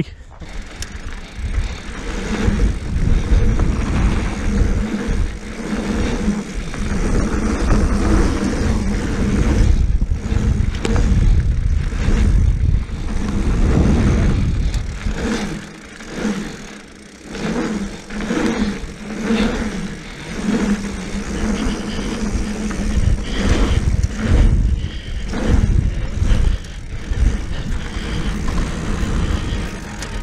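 Wind rushing over the microphone of a handlebar-mounted camera and tyres rolling on loose dirt as a mountain bike rides a pump track. The noise swells and dips as the bike goes over the rollers.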